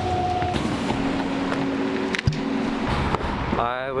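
City bus heard from inside the cabin: a steady low rumble with a whining motor tone that falls slightly, then changes to a lower steady tone about half a second in, and a single sharp knock a little past two seconds.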